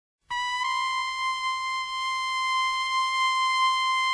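A single high tone held steady, starting about a third of a second in with a small step up in pitch just after it begins.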